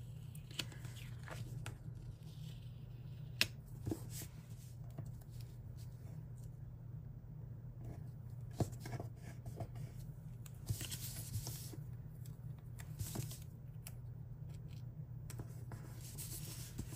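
Paper handling: stickers being peeled and pressed onto planner pages, with scattered small taps and clicks and short rustles of paper about 11 and 13 seconds in, over a steady low hum.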